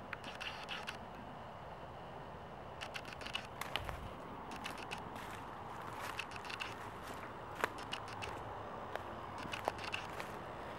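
Faint, scattered crackles and scrapes of footsteps through dry leaf litter and weeds, with rustling as the camera is handled and swung about.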